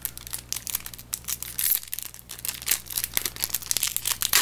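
Foil trading-card booster pack wrapper crinkling as it is opened by hand, a dense run of quick irregular crackles.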